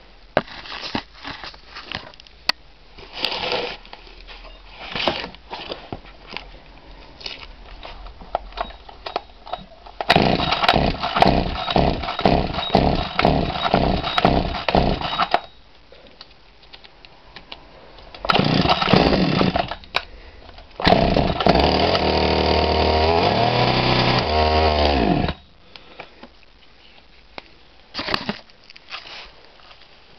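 Güde chainsaw engine being started: a few scattered bursts, then it catches and runs rough and uneven for about five seconds before dying. It fires again briefly, then runs steadily for about four seconds before its pitch falls and it stops.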